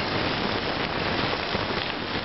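Steady crunching hiss of movement over a gravel trail, even and without a clear step rhythm.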